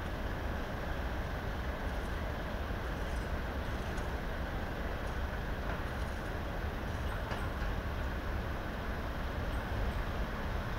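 Steady low rumble of a passenger train approaching slowly along the track, with a few faint high clicks.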